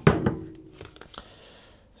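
A sharp click, then faint rustling of the thermal-paper test printout from a battery tester as it is handled.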